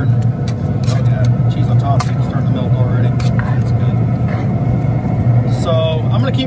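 A plastic spoon stirring thick potato-and-cheese soup in a cast iron Dutch oven, with a few soft knocks against the pot, over a steady low hum.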